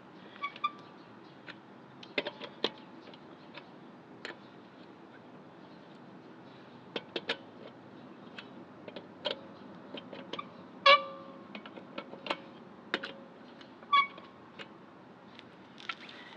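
Scattered metal clicks and clinks of a lug wrench working the lug nuts on a car wheel as they are loosened. A few sharp clinks ring briefly, the loudest about eleven seconds in.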